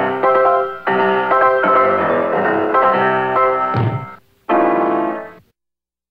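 Piano-led song accompaniment playing chords with no singing. It breaks off briefly about four seconds in, then plays a final chord that cuts off abruptly just before the end.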